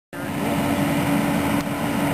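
Mitsubishi tracked excavator's diesel engine running steadily, with a constant hum.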